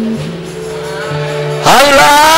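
Soft held accompaniment chords that shift in steps, then a man's singing voice slides up into a loud, long note with vibrato near the end.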